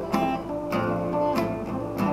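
Acoustic guitar strummed in a steady rhythm, a chord about every 0.6 seconds, in an instrumental gap between sung lines.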